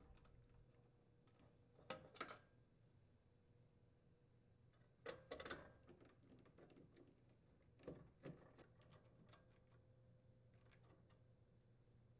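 Mostly near silence, with a few faint clicks and ticks about two, five and eight seconds in: a nut driver turning screws back into the auger motor assembly's metal mounting brackets.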